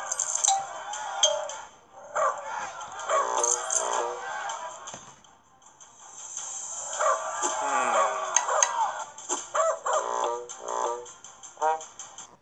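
Short cartoon character voice exclamations without words over light background music from a children's animated storybook app, with a quieter gap about halfway through and a run of short clicks near the end.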